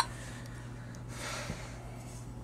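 Quiet room tone with a steady low hum. A single sharp click right at the start, then a breath drawn in a little over a second in.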